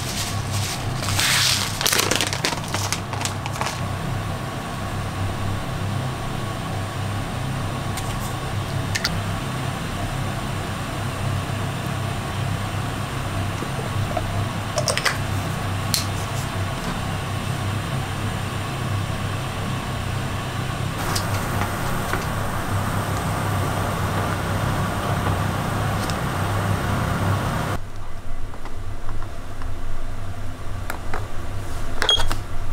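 A steady low hum of kitchen room noise, with light rattling and taps in the first few seconds as sesame seeds go onto a salad in a wooden bowl. A few single clicks follow later, and the hum cuts off abruptly near the end.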